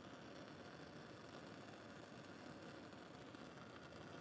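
Near silence: faint, steady room tone with no distinct sounds.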